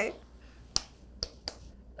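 Three sharp finger snaps from two people running through a hand-slap-and-snap handshake routine. The first snap comes a little under a second in, and the last two come close together.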